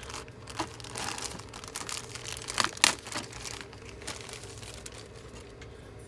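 Clear plastic bag crinkling as model kit sprues are handled and taken out of it, with a few sharper crackles about two and a half seconds in.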